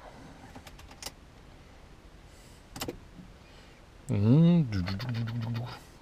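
A few sharp clicks as the ignition key is turned in a Ford Ranger's lock to start it. No engine running is heard. About four seconds in comes the loudest sound: a man's drawn-out wordless voice, rising and falling in pitch.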